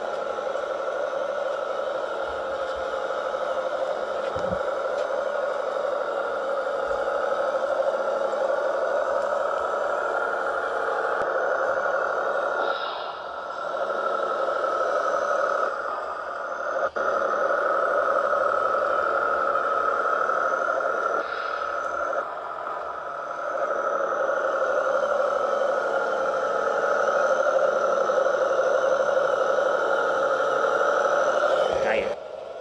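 Radio-controlled model Fendt tractor driving. Its drive gives a steady whine that drifts slightly up and down in pitch, with a few short breaks.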